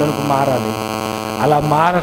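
A man's voice speaking into a microphone, in two short stretches, over a steady electrical hum that runs throughout.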